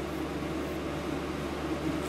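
Steady low electrical hum under a constant hiss, with no distinct event: background room noise.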